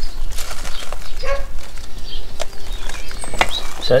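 Wind rumbling on the microphone, with light rustles and a sharp click as a fabric frame bag is handled against a bicycle frame, and a few faint animal calls in the background.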